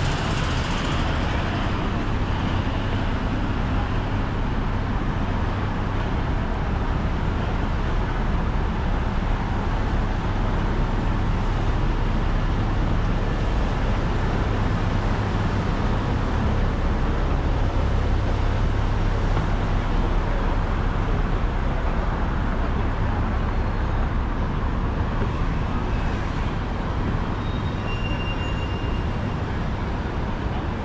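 Steady road traffic on a busy city avenue: cars passing in a continuous rumble of engines and tyres.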